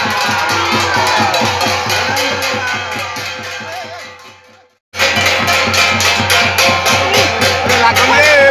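Drums beating a fast, even rhythm with a crowd shouting and calling over them. The sound fades out about four and a half seconds in, drops to silence for a moment, then comes back abruptly.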